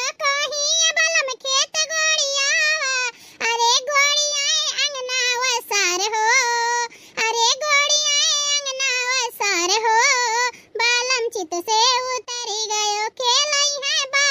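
A high-pitched cartoon character's voice in quick, wavering phrases with short breaks.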